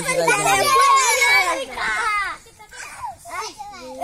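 A group of children shouting and chattering over one another. A long held call ends under a second in, the voices are loudest for the first two seconds, then thin out into scattered calls.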